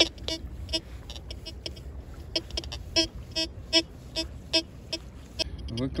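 Tianxun TX-850 metal detector beeping: short repeated single-pitched tones, roughly two a second at uneven spacing, as the coil passes over a buried metal target. A low rumble runs underneath.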